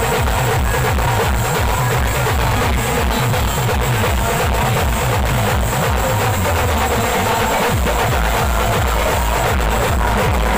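Loud live Adivasi band music: large drums beating a steady dance rhythm under the rest of the band.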